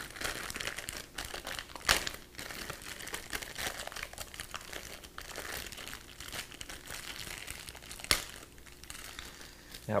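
Clear plastic wrapping crinkling steadily as it is pulled off a 3D printer's extruder assembly by hand, with two sharper, louder crackles about two seconds in and about eight seconds in.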